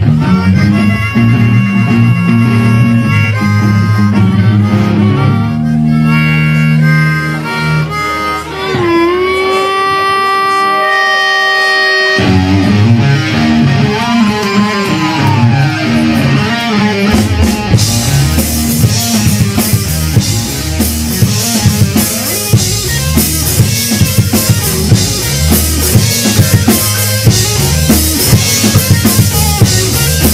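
Live blues-rock band: harmonica played into a vocal microphone with held and bent notes over bass and guitar, then about twelve seconds in the full band comes in, and from about eighteen seconds the drum kit's cymbals and snare drive an electric guitar and bass riff.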